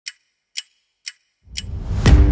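Four sharp ticks, evenly spaced about half a second apart like a ticking clock, over dead silence, then a rising swell of noise near the end that builds into music.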